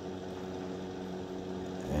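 A steady low machine hum, made of a few even tones, holding unchanged through a pause in the talk.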